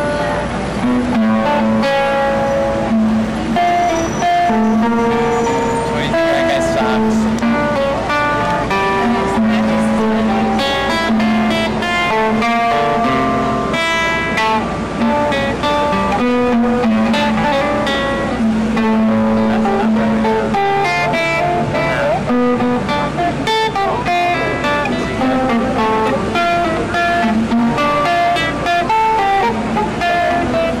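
Classical nylon-string guitar played fingerstyle: a continuous run of plucked melody notes over repeated bass notes.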